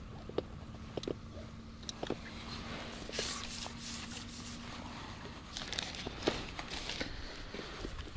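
Light clicks, knocks and rustling from an angler handling his landing net and tackle as he brings a netted fish in to the bank, with two short bursts of rustling in the middle.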